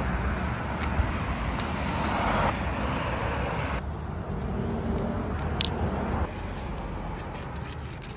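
Steady outdoor street background with a low rumble of traffic, shifting abruptly in level and tone a few times, with a few faint clicks.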